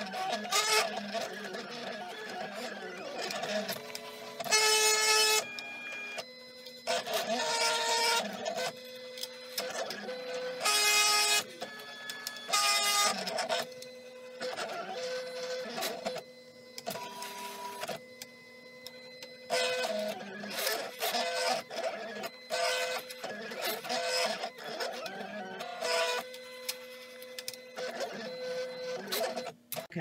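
Silhouette Cameo 3 cutting plotter cutting a vinyl stencil. Its carriage and roller motors whine in short runs, each at a different steady pitch, stopping and starting as the blade moves from stroke to stroke.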